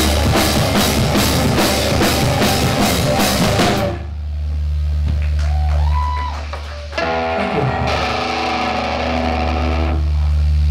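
Live rock band with electric guitars, bass and drum kit playing a fast, even beat, stopping abruptly about four seconds in. After the stop a steady low amplifier hum remains, with a few guitar notes and a strummed chord left ringing.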